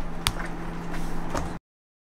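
Small clicks and taps of loose screws being picked out of an electric skateboard deck, with one sharp click about a quarter second in, over a low steady hum. The sound cuts off to dead silence about a second and a half in.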